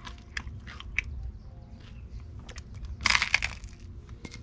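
Close-up eating of toast: small clicks of chewing, then a loud crackling crunch about three seconds in.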